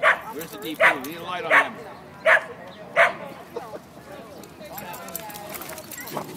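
Small dog barking in play: five sharp, yappy barks about three-quarters of a second apart in the first three seconds, then quieter.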